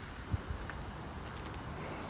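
Faint, steady outdoor background noise, with one soft low thump about a third of a second in and a couple of faint ticks after it.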